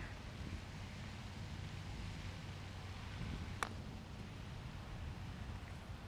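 A single sharp click of a putter striking a golf ball, about three and a half seconds in, over a quiet outdoor background with a low steady hum.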